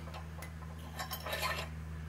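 Faint metallic clicks and clinks of a linch pin and steel mounting pin being worked out of the snow blade's mounting bracket, over a steady low hum.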